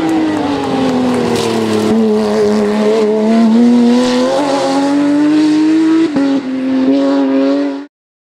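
Porsche 911 rally car's flat-six engine under load as the car passes. The pitch drops over the first two seconds as it slows for the bend, then climbs steadily as it accelerates away, with a brief dip at a gear change about six seconds in. The sound cuts off suddenly just before the end.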